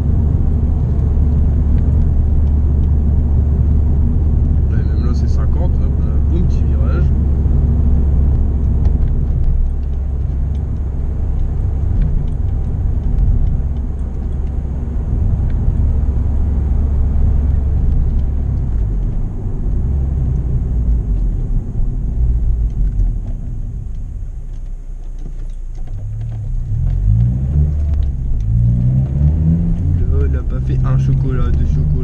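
Honda Civic Type R EP3's four-cylinder engine with an HKS exhaust droning steadily while cruising, heard from inside the cabin. It eases off and goes quieter about two-thirds of the way through, then revs up again with rising pitch near the end.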